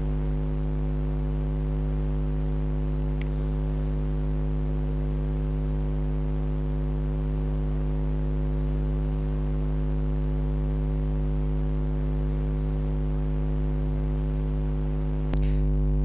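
Steady electrical hum with a stack of evenly spaced overtones, a constant buzz in the recording chain. There is one faint click about three seconds in, and the low hum steps up slightly near the end.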